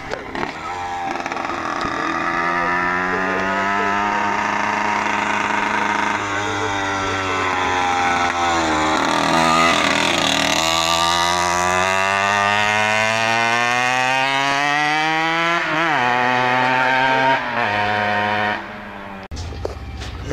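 A tuned two-stroke racing moped engine revving hard as the moped rides past. Its pitch climbs as it accelerates, dips sharply once near the middle and again shortly before the end, and the engine sound falls away just before the end.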